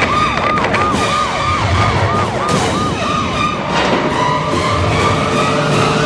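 A rapid wailing siren, sweeping up and down in pitch about three times a second, over dramatic music with a few sharp hits. The siren stops about three and a half seconds in, and the music carries on with held tones.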